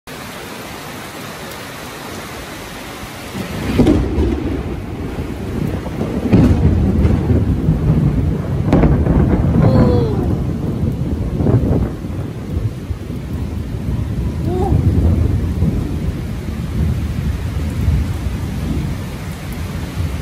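Steady rain falling, then about three and a half seconds in a thunder peal breaks in and rolls on in long deep rumbles, with louder surges over the next several seconds before easing to a lower rumble under the rain.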